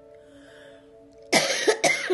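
A woman coughing: a loud short fit of coughs starting a little past a second in, after a quiet pause with faint steady background music tones.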